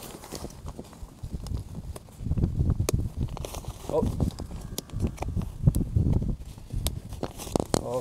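Hands handling two inflated nylon TPU sleeping pads, giving low muffled thumps and fabric rustle, with a few sharp clicks as the snap buttons joining their sides are pressed together.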